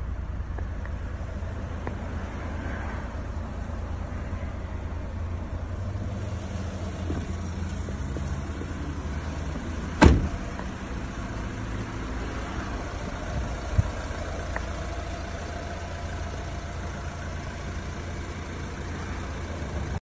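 Renault Trafic 1.6 dCi four-cylinder diesel engine idling steadily. A single loud thump about halfway through, as the van's door is shut, and a lighter click a few seconds later.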